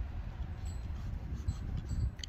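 Wind buffeting the microphone, a steady low rumble, with one faint knock about one and a half seconds in.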